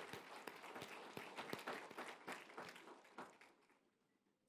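Scattered clapping from a congregation, thinning out and stopping about three seconds in.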